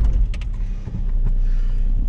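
Opel Zafira's engine revving as the car pulls away hard, heard from inside the cabin as a loud, steady low rumble. There are a couple of short clicks early on.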